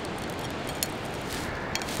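Steady wash of surf and wind on an open beach: an even hiss with a few light clicks.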